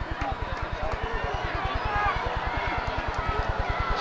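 Indistinct chatter from a football stadium crowd, with many distant voices over a steady, fast, low buzz.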